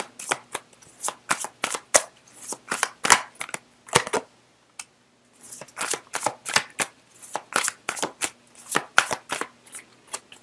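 A deck of tarot cards being shuffled by hand: a quick, irregular run of sharp papery slaps and flicks, with a short pause about halfway through.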